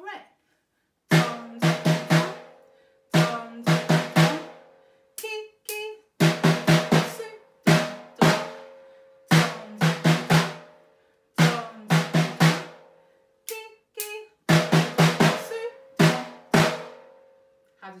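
Snare drum struck with thin sticks, playing a taiko rhythm (don doko don, don doko don, ki ki doko doko, su don don). The strokes come in clusters of two to four about every one to two seconds, each ringing briefly, with a few lighter taps between the clusters.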